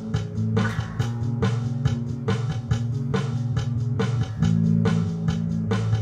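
Electric bass guitar playing sustained low notes that shift pitch a couple of times, over music with a steady beat of regular hits.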